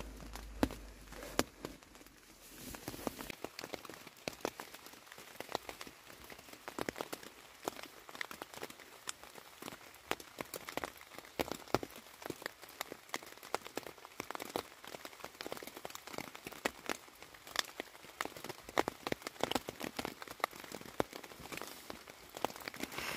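Rain falling on a tent's fabric, heard from inside the tent: a steady scatter of many small, irregular taps.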